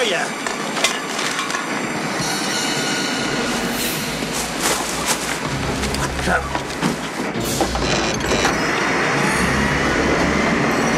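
Garbage truck machinery running: a steady mechanical rumble with scattered metallic clanks and squeals, and a faint rising whine near the end.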